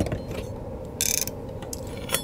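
Paper pages of a large art book being handled and turned by hand: a soft thump as a page settles at the start, small paper clicks and rustles, and a short paper swish about a second in.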